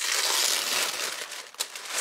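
Tissue paper wrapping crinkling as hands pull it open. The crinkling is loudest in the first second, then dies down, with a light tap near the end.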